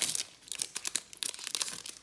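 Foil wrapper of a Topps WWE trading card pack crinkling and tearing as it is ripped open and the cards are slid out. It is a dense run of sharp crackles that thins out near the end.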